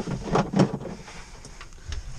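Short knocks and rustling from a person moving about in a tractor cab and handling the camera, loudest about half a second in, then quieter.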